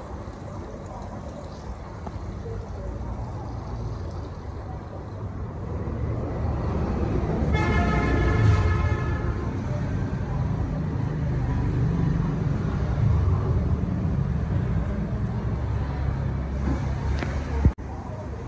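Low, steady rumble of passing road traffic, with a vehicle horn sounding once for about a second and a half midway.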